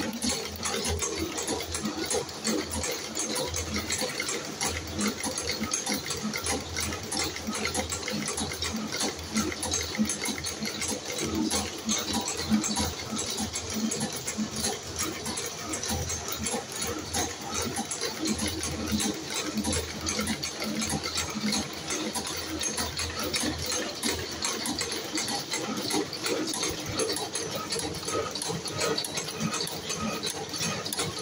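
Spring coiling machine running steadily, its wire feed and cutter making a fast, even mechanical clatter as small compression springs are formed from steel wire.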